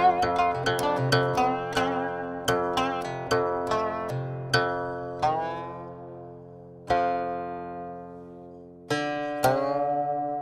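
Music on a plucked string instrument: a quick run of notes, then a few single notes that ring out long, several with their pitch bent.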